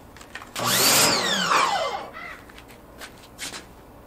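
Pressure washer motor running briefly, starting about half a second in, its pitch falling as it winds down over about a second and a half. A few faint clicks follow.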